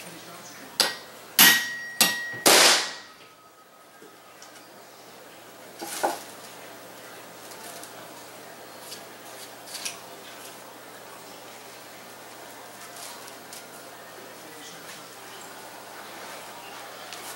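Four sharp hammer blows in quick succession on a hammer-activated powder-actuated concrete nailer, driving a Ramset nail with a .22 powder load through a wooden base plate into a concrete floor. One blow leaves a brief metallic ring. A single softer knock follows a few seconds later, then faint handling clicks; the nail has failed to go into the concrete.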